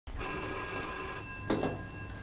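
Desk telephone bell ringing steadily. It stops with a knock about one and a half seconds in as the handset is lifted off its cradle.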